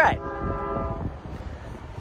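Napa Valley Wine Train's horn sounding a sustained chord of several steady notes, trailing off about a second in.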